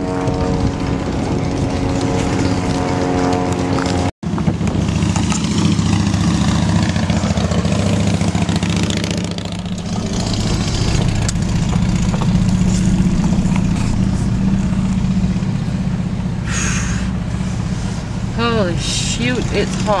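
A car's engine and road noise heard from inside the cabin while driving slowly, a steady low hum. Before a cut about four seconds in, a steady humming tone of the outdoor scene is heard instead.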